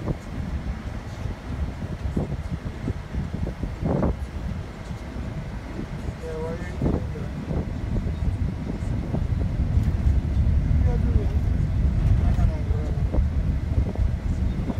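Steady road and engine noise heard inside a moving minivan's cabin, a low rumble that grows somewhat louder in the second half. A few faint voices murmur over it.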